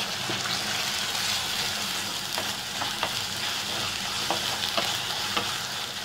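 Sliced onions and ginger-garlic paste frying with a steady sizzle in a clay pot, stirred with a wooden spatula that scrapes and knocks against the pot now and then.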